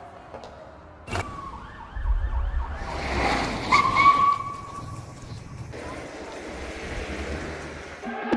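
City-night sound effects: a siren wailing and a car engine rumbling as a car pulls up. A sharp click comes about a second in, and a short steady high tone sounds near the middle.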